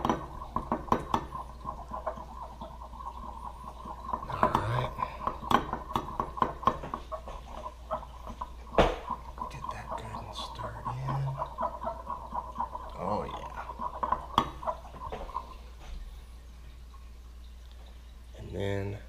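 A flat metal stir stick clicking and scraping against a glass measuring cup while stirring liquid soft plastic (plastisol), in quick irregular taps that stop near the end.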